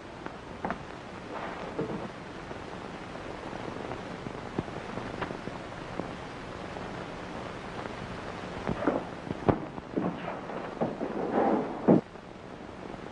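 Steady hiss of an old film soundtrack with scattered clicks and pops. A few louder knocks come in the last few seconds.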